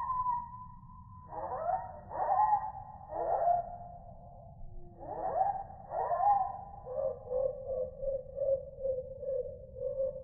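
A dog whining: several whines that sweep up and then sink and hold, then from about seven seconds in a steady run of short, pulsing whimpers.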